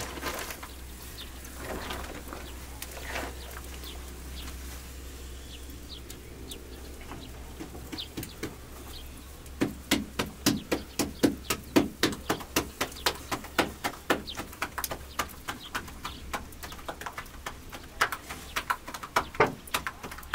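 Hands slapping a round of flatbread dough back and forth between the palms to stretch it. The quick run of sharp slaps, about three a second, starts about halfway through, pauses briefly, then resumes near the end.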